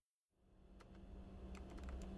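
Office background sound fading in after half a second of silence: scattered computer keyboard typing clicks over a steady low hum.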